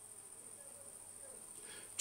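Quiet room tone in a pause between speech, with a faint, steady high-pitched whine.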